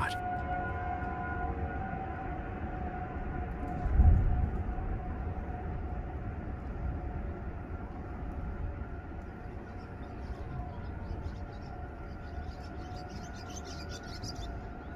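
Outdoor tornado warning siren sounding a steady, multi-tone wail that fades after the first few seconds, over a low rumble of wind buffeting the microphone, with a strong gust about four seconds in.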